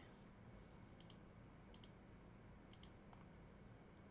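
Three faint computer mouse clicks about a second apart, each a quick double tick, over a faint steady low hum.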